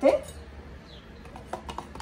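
A few light clicks and taps in the second half: a metal spoon scraping tomato sauce out of a carton into a stew pot.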